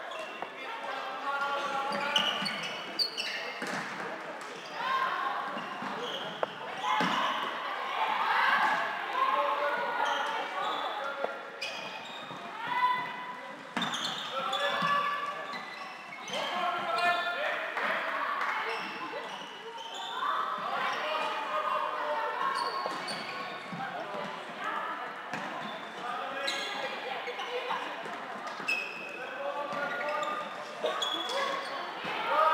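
Floorball match play in an echoing sports hall: players' voices calling on court, with sharp clacks of sticks and the plastic ball scattered through.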